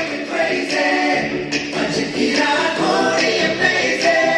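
A recorded song with sung vocals played loudly through the hall's sound system as backing for a stage dance.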